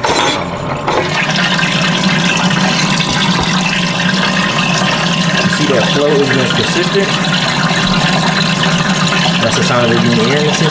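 Intercooler coolant circulating through the open reservoir tank while the electric pump runs: a steady rushing and churning of liquid with a low hum under it, starting about a second in as the cap comes off. It is the fill-and-bleed of the supercharger's intercooler loop, the tank filling as coolant pushes through.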